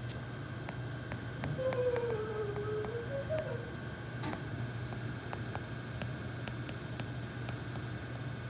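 Quiet classroom room tone: a steady low hum with scattered faint clicks. A brief wavering pitched sound comes from about two to three and a half seconds in, and a single sharper click follows a little after four seconds.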